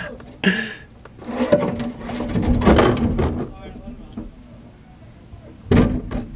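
Water from a garden hose spraying against a window screen, mixed with muffled shouting and laughter, with short loud bursts near the start and just before the end.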